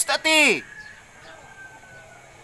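A person's voice calling out once, high-pitched and falling steeply, lasting about half a second right at the start; then only low background.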